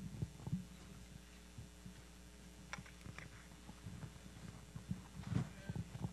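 Steady electrical mains hum from the sound system, with scattered soft low thuds throughout and a few faint clicks, loudest about five seconds in.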